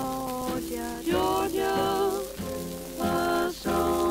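Swing small-band music from an old 78 rpm shellac record: harmonized melody notes held and changing about once a second over piano, guitar and bass, with a light crackle of record-surface noise.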